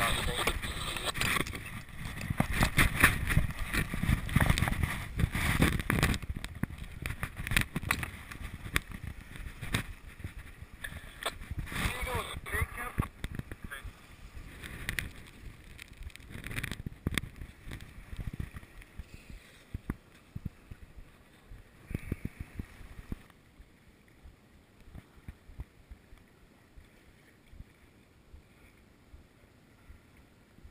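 Wind and water noise aboard a small sailboat under way, broken by irregular knocks and clatter. It is loudest in the first half, then dies down to a faint hiss after about 23 seconds.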